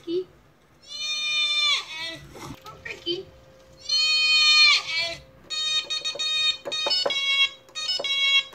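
A goat's loud, human-like scream ('ahhh'), twice, then the same scream sample cut into short pieces played in a quick rhythm.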